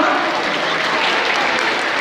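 Audience applauding steadily, with voices mixed in.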